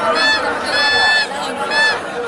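Spectators shouting, cut through by repeated shrill, steady-pitched blasts, the longest held about half a second near the middle.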